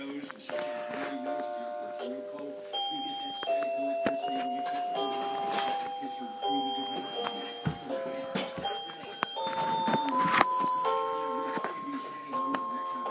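Children's toy electronic keyboard playing a tune of held, chime-like electronic notes, stepping from one note or chord to the next every half second to a second and climbing higher toward the end, with the clicks of keys and handling in between.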